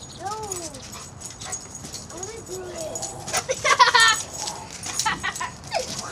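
A dog whining in short rising-and-falling whines, with a louder high yelp about three and a half seconds in, eager for a fishing lure dangled on a line.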